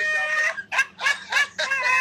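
A man laughing loudly and high-pitched: a held cry, a quick run of short bursts, then another long held cry, played back through a phone's speaker.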